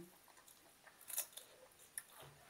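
Crisp crunching of a raw vegetable being bitten and chewed: a short cluster of sharp crackly clicks about a second in and another near the end, over quiet room tone.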